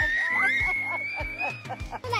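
Children laughing and giggling, with one long high-pitched squeal rising slightly in pitch, over background music with a steady beat.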